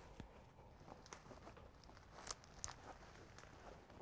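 Near silence, with a few faint soft taps and rustles, the clearest about halfway through, from a terry cloth towel being rolled up by hand on a marble countertop.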